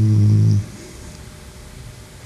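A man's drawn-out hesitation sound, a level 'э-э' held for about half a second while he searches for words, then quiet room tone.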